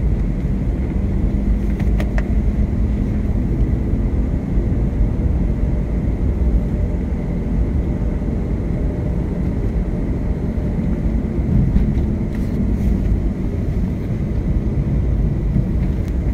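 Car driving, heard from inside the cabin: a steady low rumble of engine and tyres on the road. A few faint clicks come through, one about two seconds in and a couple more near the end.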